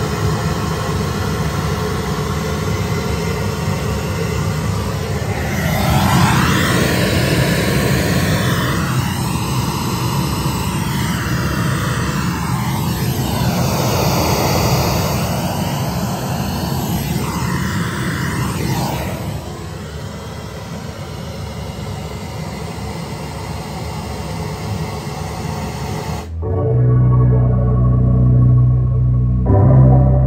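Music played loud through the 2023 Harley-Davidson CVO Road Glide's factory Rockford Fosgate audio system while it is measured for sound level. Gliding melodic lines fill the middle of the stretch. Near the end the highs drop out suddenly and a heavy deep bass note takes over.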